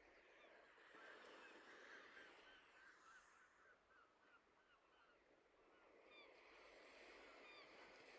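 Faint bird calls in the background: a quick, steady run of short calls, about three a second, with higher-pitched calls joining near the end.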